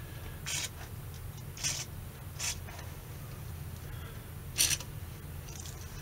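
Aerosol contact cleaner sprayed in several short hissing bursts into a guitar's volume and tone pots and pickup selector switch, to clean them.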